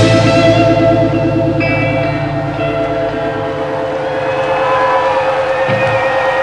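Electric guitars in a live rock band hold a distorted chord struck at the start, ringing on through echo effects with a steady wavering pulse and slowly fading. A high sliding guitar note comes in near the end.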